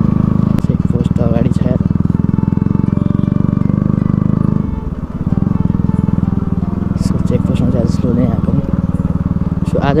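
Motorcycle engine running under way, heard from the rider's seat with a rapid, even firing beat. About five seconds in its sound drops briefly, then picks up again.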